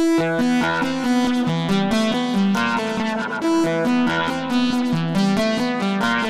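Shruthi-1 synthesizer playing a fast melodic sequence of plucky single notes, about four a second, starting abruptly.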